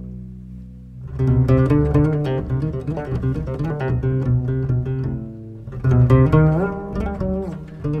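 Double bass played pizzicato, a fast run of plucked notes over orchestral accompaniment, coming in about a second in after a held orchestral chord fades. There is a short lull a little past the middle, then the plucked line picks up again loudly.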